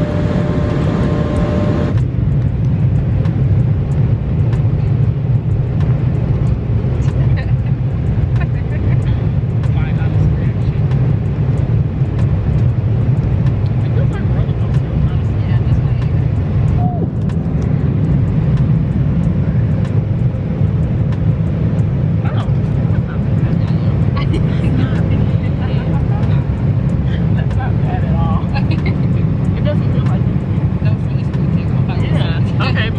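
Airliner cabin noise: a steady low rumble of engines and air, with faint passenger voices in the background.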